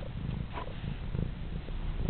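Domestic cat purring close to the microphone, a steady low rumble.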